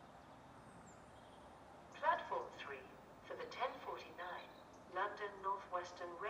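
Faint steady background hiss, then from about two seconds in a voice announcement over the station public-address loudspeakers.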